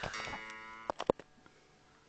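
A plucked guitar string ringing and fading while it is being tuned to pitch, then three sharp clicks about a second in.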